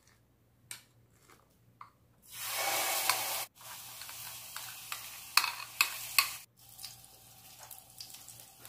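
Thick date paste scraped with a spoon from a ceramic bowl into hot melted butter in a pan: a few light spoon clicks, then sizzling starts about two seconds in, loudest for about a second as the paste hits the fat. It goes on more quietly, with sharp taps of the spoon against the bowl.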